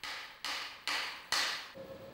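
Hammer blows knocking the ceramic investment-casting shell off a metal casting: four sharp strikes about half a second apart, each fading quickly.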